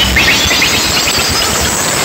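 Very loud DJ music from a truck-mounted speaker stack, heard as a distorted, crowded wash with short falling pitch streaks; the bass thins out near the end.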